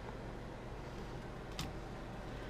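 Low steady room hum and background noise, with one faint click about one and a half seconds in.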